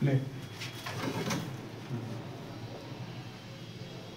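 Low murmured voices, loudest right at the start, with a few sharp light clicks in the first second and a half as a carrom striker is set and adjusted on the board's baseline.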